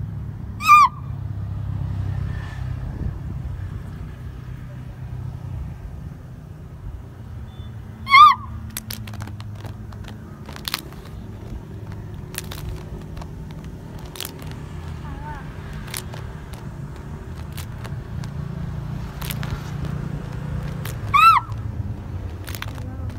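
A steady low rumble with scattered sharp claps or slaps. Three short, high-pitched cries rise and fall, about a second in, near eight seconds and near the end, and are the loudest sounds.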